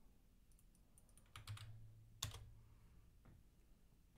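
Faint computer keyboard clicks over near silence: a few light taps, then one sharper click a little past halfway, with a faint low hum beneath them.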